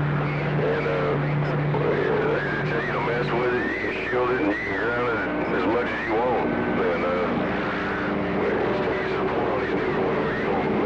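A CB radio's receiver speaker carrying garbled, warbling on-air voices that are hard to make out, with whistling tones over a steady static hiss. A low hum runs under it and stops about three and a half seconds in.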